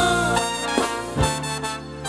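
Live band playing an instrumental phrase between sung lines, with a brass-like lead melody over drums that strike a few times; the music eases off a little near the end.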